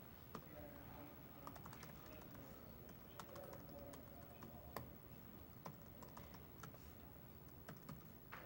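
Faint computer keyboard typing: irregular keystrokes clicking at uneven intervals, with one sharper click a little past the middle.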